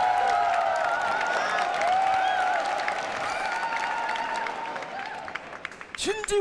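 A large audience applauding and cheering, with shouts and whistles mixed into the clapping. It dies down near the end.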